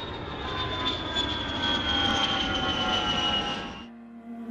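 Airplane fly-by sound effect: a rushing engine noise with a whine that slowly falls in pitch as it passes, swelling in the middle and fading out near the end.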